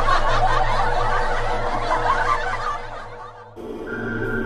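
Laughter, chuckling and snickering from several voices over background music; it fades out about three seconds in. Near the end a sudden cut brings in eerie ambient music with long held tones.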